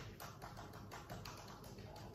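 Faint, irregular light clicks and taps of a smartphone being fitted and clamped into an aluminium smartphone video rig.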